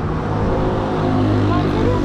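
Steady mechanical hum of a fuel dispenser's pump running while petrol is pumped into a motorcycle tank, with faint voices.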